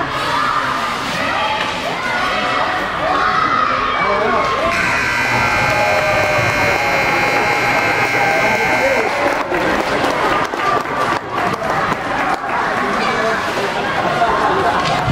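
Crowd voices and children shouting in an ice rink. About a third of the way in, the rink's buzzer sounds steadily for about four seconds, then cuts off. After it come several sharp knocks under the crowd noise.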